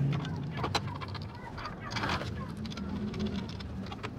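A few light metal clicks and taps as scooter muffler mounting bolts are fitted and threaded in by hand, over a low background murmur.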